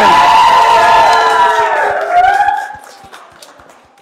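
A group of children cheering and clapping together, loud for the first two and a half seconds and then dying away.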